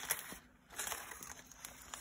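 Aluminium foil burger wrapper crinkling as it is handled, a soft run of small crisp crackles.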